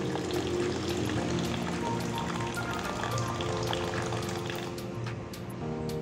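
A thin stream of water from a rechargeable electric jug pump splashing into a plastic basin, under background music with steady held tones. The splashing thins out near the end as the flow stops.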